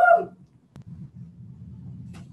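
A woman's short, high whoop right at the start, rising then falling in pitch. A sharp click follows just under a second in, then a low steady hum.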